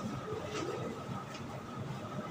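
Marker pen strokes on a whiteboard, two short scratches about half a second and a second and a quarter in, over a steady low room hum with a faint high whine.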